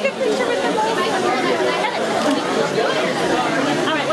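Indistinct chatter of a crowd, several people talking at once.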